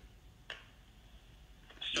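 A pause of near silence broken by a single faint click about half a second in, then a man's voice through a phone's speaker begins asking "Sorry" near the end.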